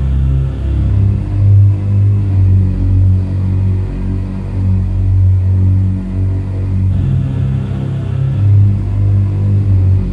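Blackened death metal from a 1997 promo cassette: a loud, dense, distorted band sound heavy in the low end and continuing without a break.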